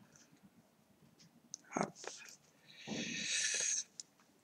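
A short vocal sound about two seconds in, followed by a breathy sigh lasting about a second near the end.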